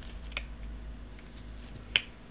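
A few small sharp clicks and scrapes of a knife tip against a glue pen's plastic tip as a rolled nib is pushed in, with the loudest click just before the end. A steady low hum runs underneath.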